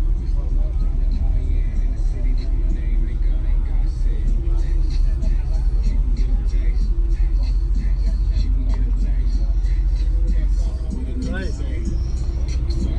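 Steady low rumble under indistinct chatter from a crowd. The rumble eases slightly near the end.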